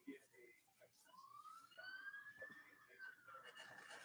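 Near silence, with a faint wailing tone that slowly rises in pitch for about two seconds and then falls again near the end.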